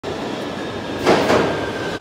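London Underground train approaching along the tunnel into a station platform. The rumble and rush of the train grow louder about a second in, over a faint steady high whine.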